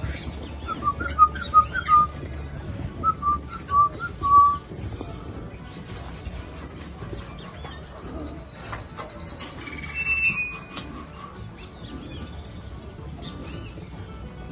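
Birds calling: a run of short, loud whistled notes in the first four or five seconds, then a higher, rapid trilling song from about eight to ten seconds in.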